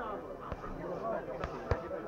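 Three short, sharp thuds of blows landing in a heavyweight ring bout, the last and loudest near the end, over background voices from around the ring.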